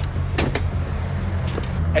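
A steady low car-engine drone, like an engine idling, with a short knock about half a second in.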